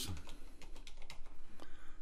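Typing on a computer keyboard: a quick run of light keystrokes.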